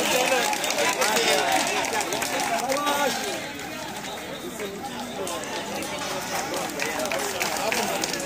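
Several people talking at once outdoors, overlapping voices with no single clear speaker, busier and louder for the first three seconds and a little quieter after.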